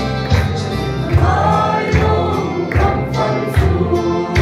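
Mixed choir of young men and women singing a Mizo hymn in parts, the voices sustained and continuous.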